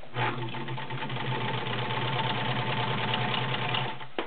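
Kenmore model 1318 all-metal sewing machine running at a steady speed as it stitches through fabric: an even motor hum under a fast, regular clatter of the needle mechanism. It starts just after the beginning and stops near the end.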